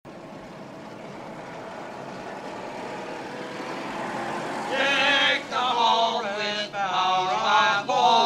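A steady hum fades in and grows louder for about five seconds. Then voices start singing in a chant-like way, in short phrases with brief breaks and no clear words.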